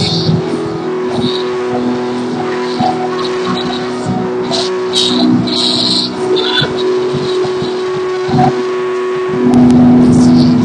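Live worship music: a keyboard holds sustained chords while the congregation claps and calls out praise. The band grows louder near the end.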